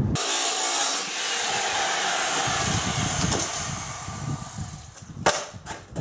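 Corded circular saw, set to a very shallow depth, cutting along the edge of a thin plywood wall panel: the motor runs steadily while the blade cuts, then winds down about four seconds in. A single sharp knock follows a little after five seconds.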